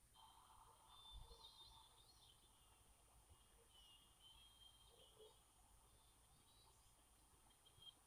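Near silence: faint room tone with a few faint, high chirps.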